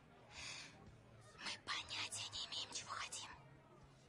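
A woman whispering close into a man's ear, the words breathy and hard to make out, for about three seconds.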